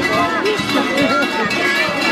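Many large kurent costume cowbells ringing and clanging together continuously as the costumed figures shift about, with crowd voices mixed in.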